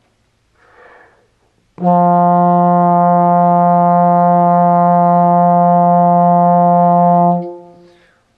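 Bass trombone breath taken in, then one long held low F of about five and a half seconds, the loudest thing here, tapering off near the end. It is the plain sustained note on which jaw vibrato is being demonstrated.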